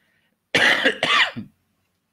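A person coughing, close to the microphone: two quick, loud bursts lasting about a second in all.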